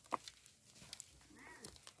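Soft crackle and patter of potting soil and fibrous roots being crumbled apart by hand, with a few small clicks. A faint, short animal whine comes about a second and a half in.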